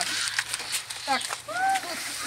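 Children and adults talking over one another in short, high-pitched bits of speech.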